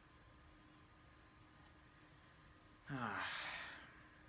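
Quiet room tone, then about three seconds in a man sighs once, a voiced breath falling in pitch and lasting about a second.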